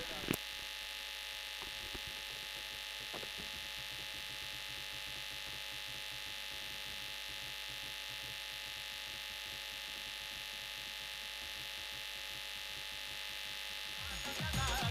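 Low, steady hiss with a faint electrical hum made of several steady tones, and one short click just after the start.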